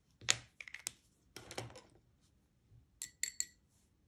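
A few light clicks and taps of hard craft tools on the work surface, a clear acrylic stamp block and a brush marker being handled and set down. The taps are scattered over the first two seconds, with a quick cluster of clicks about three seconds in.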